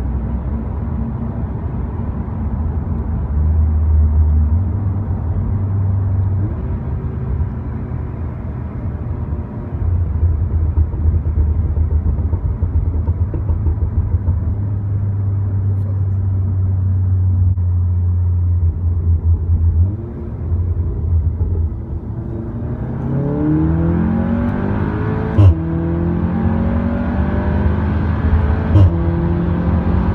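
A SEAT Leon Cupra ST 280's turbocharged 2.0-litre four-cylinder heard from inside the cabin, at first cruising with a steady low drone. From about two-thirds of the way through it accelerates hard with a rising note, broken by a sharp crack at each of two quick DSG upshifts.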